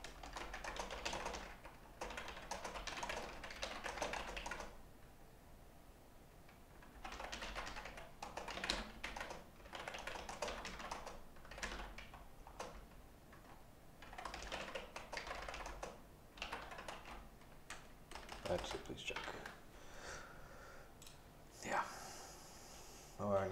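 Typing on a computer keyboard: rapid runs of keystrokes in several bursts with short pauses between them.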